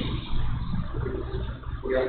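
A steady low hum of background noise with faint indistinct sounds over it.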